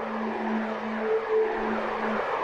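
Sound effect for a spinning toy-style windmill: a low humming tone with a rushing, swirling noise over it.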